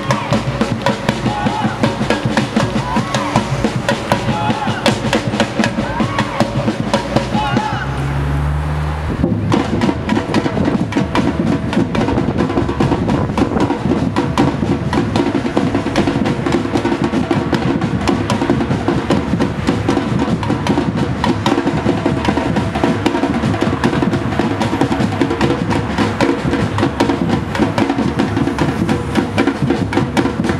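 Batucada drum group playing a marching samba rhythm on deep bass drums and snares. Voices can be heard over the drumming during the first part, and the drum sound changes abruptly about nine seconds in.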